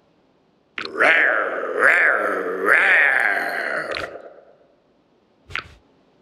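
A cartoon animal voice giving a drawn-out roar for about three and a half seconds, its pitch rising and falling several times. A short vocal sound follows near the end.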